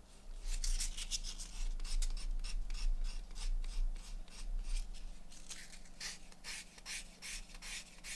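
Abrasive sheet rubbed back and forth over a leather edge by hand: quick scratchy strokes, several a second, with no break.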